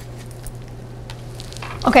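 Quiet room tone with a steady low hum, and a few faint soft clicks of a tarot card being drawn from the deck, before a woman's voice near the end.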